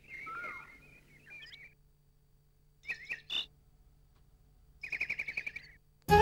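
Small birds chirping in three short bouts: a cluster of chirps at the start, a few calls in the middle and a quick trill of about ten notes near the end, fairly faint.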